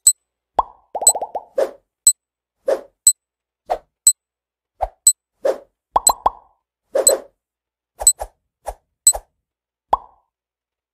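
Countdown timer sound effect: short high ticks about once a second, with shorter lower pops between them and a brief buzzy run of pops about a second in.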